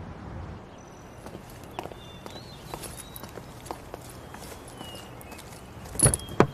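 Hard-soled footsteps on pavement, a short click about twice a second, with faint bird chirps.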